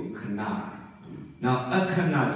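A monk's voice preaching in Burmese over a microphone in a hall, with a short pause about a second in before he goes on.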